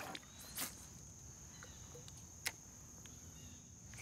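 Faint, steady, high-pitched chirring of summer insects such as crickets, with two short sharp clicks, one about half a second in and one about two and a half seconds in.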